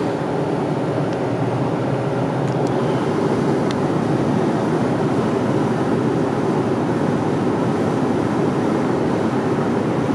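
Steady road and engine noise inside a car's cabin, cruising at highway speed.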